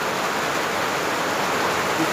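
Heavy rain pouring down in a steady, even hiss, having just grown stronger.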